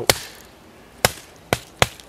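A wooden baton giving a knife's spine light taps, four sharp knocks with the last two close together, driving the blade down into a piece of wood without splitting it.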